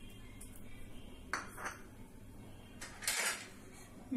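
Sugar tipped from a bowl into a steel mixer-grinder jar, with clinks and scrapes of the bowl and steel jar being handled: two short sounds just over a second in and a longer one about three seconds in.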